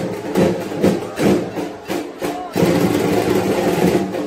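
Festival crowd sound: drum strikes at an uneven pace under music and mixed crowd voices, with a steady droning tone coming in a little past halfway.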